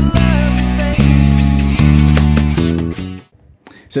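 Electric bass guitar playing a line along with a full-band backing track that has a male lead vocal. The music cuts off about three seconds in, and a man starts speaking just before the end.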